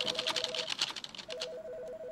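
Rapid computer-keyboard typing, with keys clicking quickly for about a second and a half, then stopping. A faint pulsing two-note tone sounds underneath.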